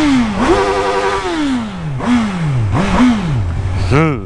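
Motorcycle engine heard from the rider's seat, revving up and falling back several times while the bike slows down: one held high note, a long drop in revs, then two short rises and falls before it settles low.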